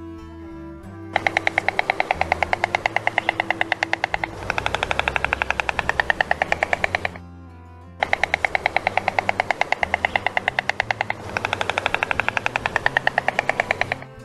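Woodpecker drumming: a fast run of sharp taps lasting about six seconds, heard twice over soft background music.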